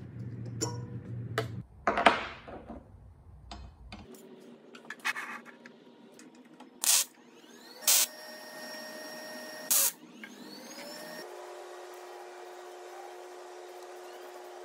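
A small power tool in a metal shop running in short stretches with a steady motor whine, broken by a few sharp loud hits.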